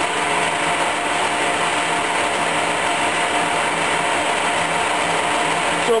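Colchester Mascot lathe running fast with its feed gearbox driving both the feed shaft and the leadscrew: a steady gear hum with a beat, the sign that the gearbox is working fine.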